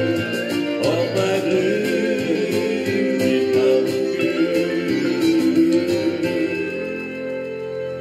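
Acoustic guitar music in a country style, closing out a song: held chords that thin out and begin to fade in the last couple of seconds.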